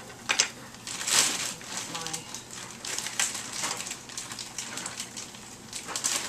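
Several short bursts of crinkling and rustling from handling, the strongest about a second in.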